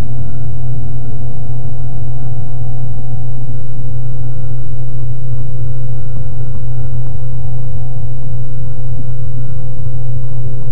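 Washing machine running: a loud, steady, deep hum with a few fixed higher tones over it, unchanging throughout.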